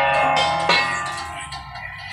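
Music: a few struck notes or chords ring on together, the last strike coming under a second in, then fade away.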